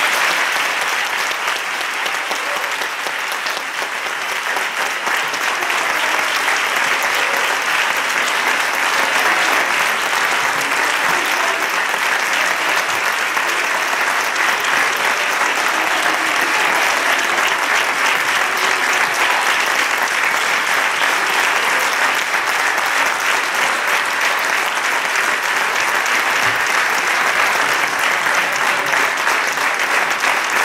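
Audience applause, a dense, steady clapping that carries on without a break, dipping slightly a few seconds in.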